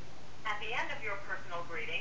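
A voice speaking through a phone's speakerphone, thin and narrow like telephone audio, with a steady low hum beneath. It is the voicemail system playing back its prompts or the recorded greeting.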